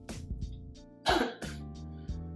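A woman coughs once, sharply, about a second in, over steady background music.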